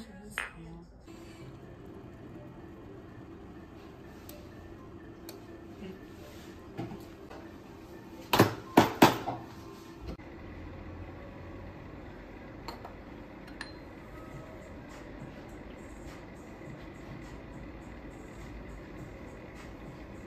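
Café counter tableware sounds: a ceramic mug clink just after the start, then three sharp knocks close together about eight and a half seconds in, the loudest sounds, with a few faint ticks over a steady low background.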